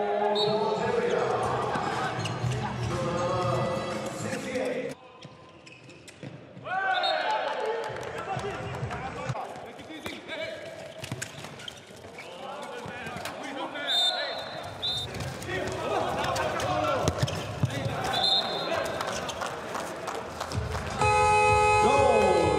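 Handball match sound in a large, nearly empty hall: the ball bouncing and slapping on the court amid players' shouts and calls. Near the end a steady music chord comes in.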